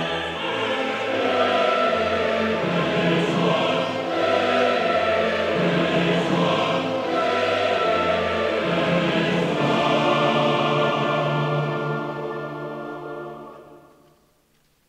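A symphony orchestra and a large choir perform a classical choral work together, with full sustained singing over the orchestra. Near the end the music dies away.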